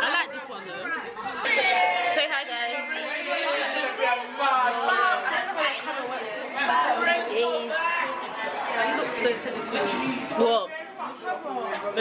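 Group chatter: several women talking over one another at a table in a restaurant dining room, no single voice standing out.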